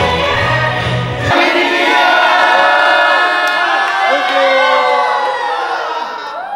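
A large group of voices singing and cheering together over a Christmas song. The song's bass drops out about a second in, leaving the massed voices with many rising-and-falling calls.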